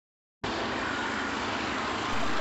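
Street traffic: motorcycles and cars passing, a steady rush of engine and road noise that starts about half a second in.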